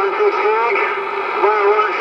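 Faint skip voices garbled under a steady wash of static from a Uniden Bearcat 980SSB CB radio's speaker on AM, 11-metre band: long-distance signals fading in and out.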